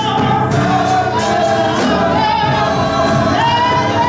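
Live gospel choir singing with drum kit and keyboard accompaniment, cymbals struck repeatedly through the passage.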